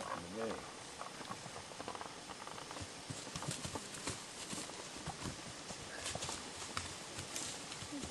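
Footsteps crunching and shuffling through dry leaf litter on a forest floor: scattered faint crackles and snaps, busier in the second half.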